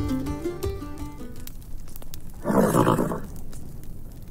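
Plucked-string music fades out about a second in. Then a horse gives one short whinny, about two and a half seconds in.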